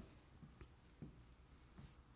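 Faint rubbing of drawing on an interactive display screen, with a few light ticks of contact against the glass; otherwise near silence.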